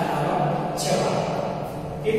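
A teacher speaking.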